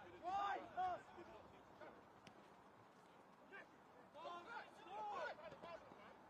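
Faint shouted calls of players' voices on the pitch: a couple of short calls just after the start and another burst about four seconds in, over a quiet open-air background.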